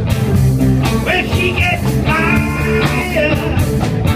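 Live blues-rock band playing loud and steady: electric guitars, bass and drums.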